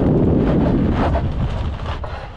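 Wind rushing over a camera mounted low beside a Toyota 4Runner's wheel, mixed with tyre and road noise. The rush fades gradually as the truck slows to a stop.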